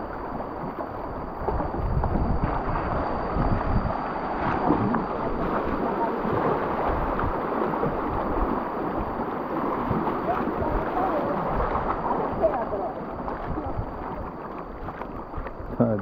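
River water rushing and gurgling around a bamboo raft as it is poled through choppy water, with wind on the microphone.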